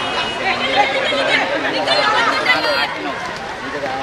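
Several voices shouting and chattering at once: players and onlookers calling out during a football match.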